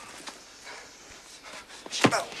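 Faint footsteps on a dirt forest floor, a few soft scattered steps over quiet background ambience.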